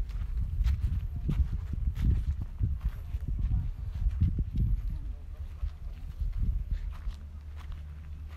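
Low rumble of wind on a phone microphone, with irregular soft thumps and footsteps on dry, gravelly ground.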